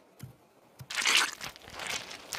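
Cartoon sound effect of sun cream being squeezed from a plastic bottle and rubbed on: a short hissy squirt about a second in, with fainter rubbing after it.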